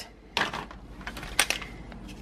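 MRE ration pouches rustling and crinkling as they are handled, in two short bursts.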